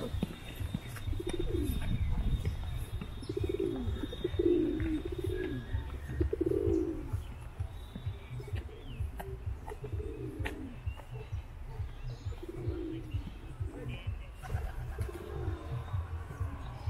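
Birds calling in low, rounded notes repeated about a second apart, loudest a few seconds in, over a steady low rumble.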